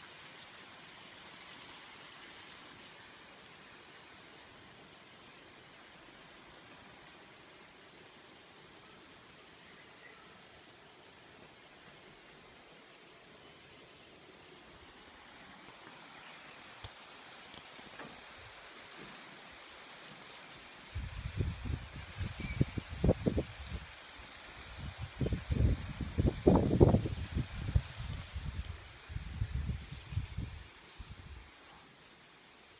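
Faint, steady outdoor hiss of wind through the trees above the gorge, growing brighter partway through. In the last third it is broken by strong, irregular low rumbling gusts of wind on the microphone.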